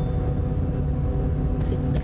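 Steady engine and road rumble of a moving bus, heard from inside the passenger cabin.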